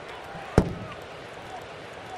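A 93 mph four-seam fastball popping into the catcher's mitt: one sharp smack about half a second in, over a steady ballpark crowd hum.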